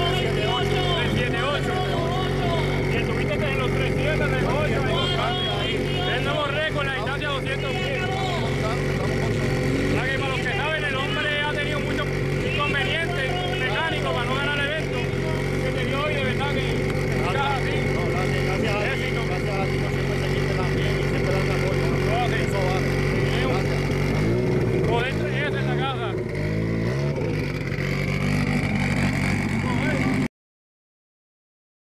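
Engine of a caged off-road race truck idling steadily close by, under talk. About twenty-five seconds in, its pitch rises and falls a few times in short revs.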